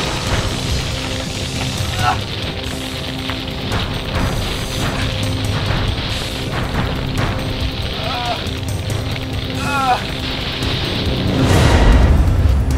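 Film soundtrack of a magic attack: a steady musical drone, with a man's short pained cries a few times, and a rising whoosh of sound effect swelling just before the end.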